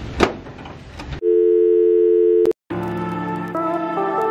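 Background noise with a sharp knock, then a steady electronic two-note tone like a telephone dial tone, held for about a second and a half and cut off abruptly. After a moment's silence, intro music starts with sustained chords.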